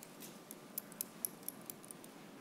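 A quick, irregular series of about eight light, sharp clicks over faint room tone.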